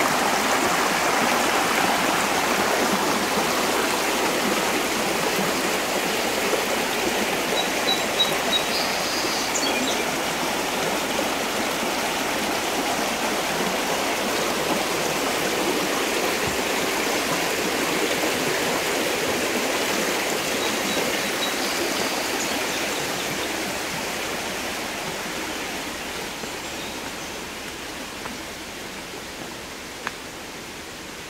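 Shallow rocky creek running and rippling over stones: a steady rush of water that fades gradually over the last several seconds.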